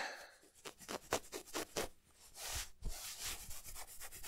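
Soft ASMR scratching and rubbing close to the microphone, fingers scratching to stand for head scratches. A quick run of short strokes comes first, then a longer rub about two and a half seconds in, then more strokes.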